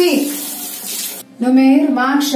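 Bathroom sink tap running, water splashing into the basin; the water stops abruptly a little over a second in.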